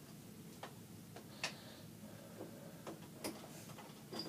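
Scissors working at a jammed bathroom door latch, giving faint, irregular metallic clicks and taps, about half a dozen, the sharpest at about one and a half seconds and three and a quarter seconds in.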